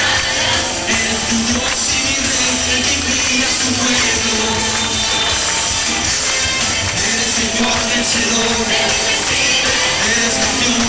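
Loud live worship music with a tambourine, the congregation clapping and singing along without a break.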